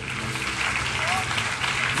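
Congregation applauding steadily, with crowd voices underneath.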